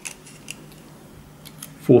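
A few faint, short metallic clicks and taps from a euro cylinder lock, its key and a tape measure being handled in the hands.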